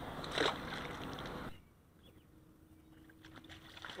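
A small summer flounder (fluke) let go into the water with a brief splash about half a second in, over a steady wash of wind and water noise. About a second and a half in the sound cuts to near silence.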